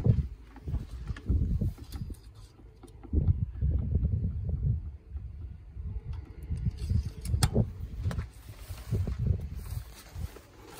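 Uneven, gusting low rumble of wind and handling noise on a handheld microphone, with a sharp click about seven and a half seconds in.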